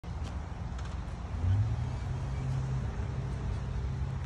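Low, steady rumble of motor traffic, with an engine hum that comes in about one and a half seconds in and holds.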